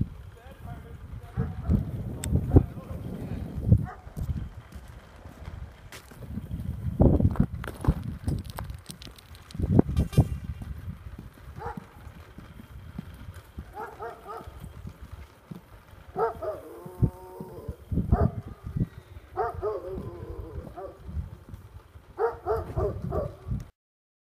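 Irregular low rumble of wind on the microphone, with short bursts of a person's voice, wordless calls or laughter, through the second half. The sound cuts off just before the end.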